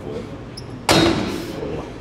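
A single loud metallic clank about a second in, fading quickly, from the plate-loaded leg press machine as its loaded sled is handled.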